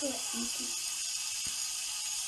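A short, soft murmur of a woman's voice at the start, then a steady hiss of quiet room noise with one faint tap about one and a half seconds in.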